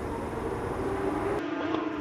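Porsche 911 GT3 Cup race cars running on the track, a steady engine drone with no words over it.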